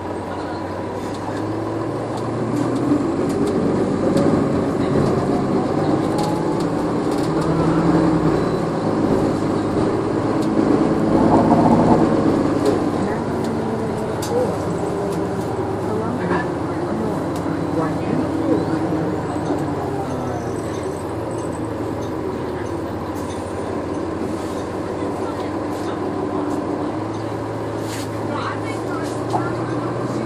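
Interior of a 2014 NovaBus LFS hybrid city bus (Cummins ISL9 diesel with Allison EP40 hybrid drive) under way. The drivetrain whine and engine note climb in pitch as the bus accelerates over the first dozen seconds, peak, then fall away as it slows. Passenger voices murmur in the background.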